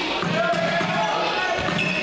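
Basketball game sound in a gymnasium: a basketball bouncing on the hardwood court, with short squeaks and voices of players and spectators echoing in the hall.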